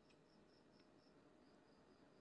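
Near silence: faint room tone with a faint, even, high chirping of an insect, likely a cricket, repeating about four times a second.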